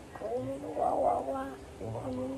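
A voice making drawn-out, animal-like calls rather than words: one long call, then another starting near the end.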